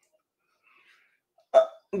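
Near silence, then near the end a man's short, abrupt "uh" in his own voice.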